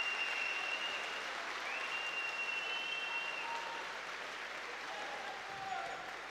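Live audience applauding the announcement of the bout's winner, the applause slowly dying down.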